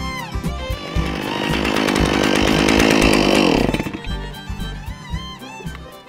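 Stihl chainsaw running at high revs for about three seconds, swelling then dying away, its chain freshly sharpened, heard under violin background music.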